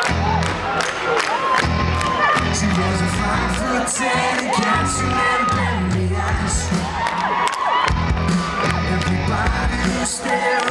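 Live pop band playing a song's opening with a steady drum beat and bass, while the audience cheers and whoops over it.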